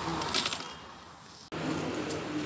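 A short metallic jingle of small metal objects clinking about half a second in, followed by a brief ringing tone; the sound cuts off suddenly about a second and a half in, and street noise comes back after it.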